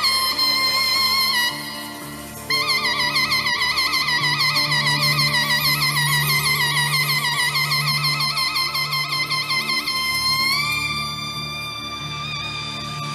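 Zurna played live on stage: a high, reedy melody of long held notes with rapid ornamental wavering. The melody drops away briefly about two seconds in and steps up to a higher held note near the end, over a low sustained accompaniment.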